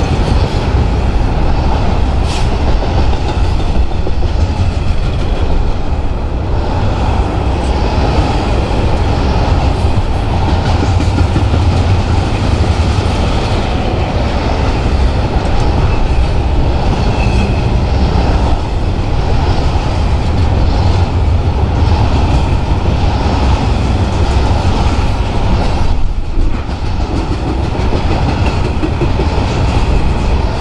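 Double-stack intermodal freight train passing close by: steel wheels of loaded well cars rolling on the rails in a loud, steady rumble, easing briefly near the end before picking up again.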